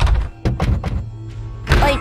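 Latched closet door thudding against its bolt as it is pushed from inside and will not open: a handful of dull thunks in the first second, over background music.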